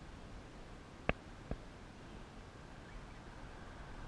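Faint, even outdoor background hiss broken by two short clicks, the first about a second in and a fainter one half a second later.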